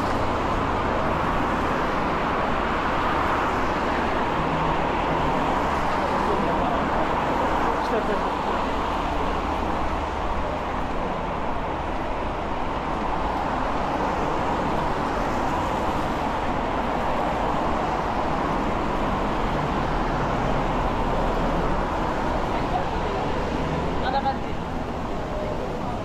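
Steady road traffic noise from a busy city street: cars and vans passing in a continuous even wash with no single loud event.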